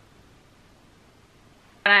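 Quiet room tone with a faint steady hiss, then a woman starts speaking abruptly near the end.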